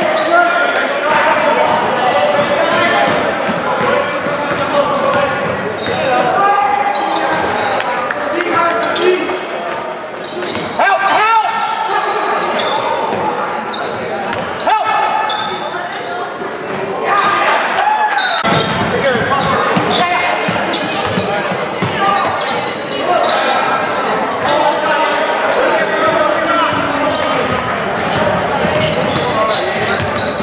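Basketball game sounds in a gymnasium: many indistinct voices of spectators and players calling out over one another, with a basketball bouncing on the court floor.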